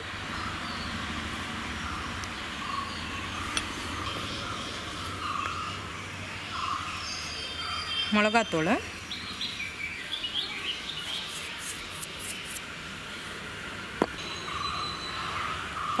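Birds chirping in the background over steady outdoor ambient noise, with a single short spoken word about halfway through.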